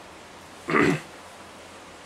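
A man's single short cough, about three-quarters of a second in.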